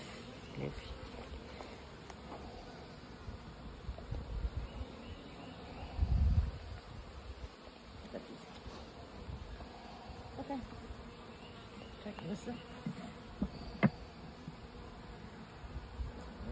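Honeybees buzzing around an open top-bar hive, with a few individual buzzes rising and falling in pitch. There is a low thump about six seconds in and a sharp tap near the end.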